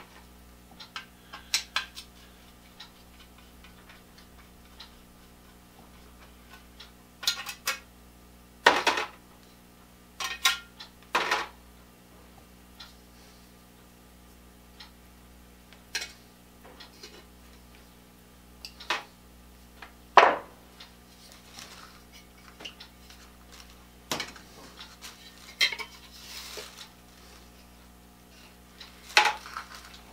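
Small metal screws and parts clicking and clinking against each other and the workbench while screws are taken out of a rotisserie motor's housing. The clicks are scattered and irregular, with a few louder clatters.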